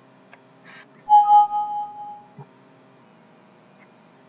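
A short two-note electronic chime from the computer, about a second in: a lower tone with a higher one just after, ringing out and fading within about a second. A couple of faint mouse clicks come shortly before and after it.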